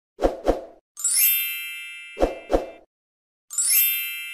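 Subscribe-button intro sound effect, played twice. Each time there are two quick pops, then a bright chime that rings and fades over about a second. The second chime starts near the end.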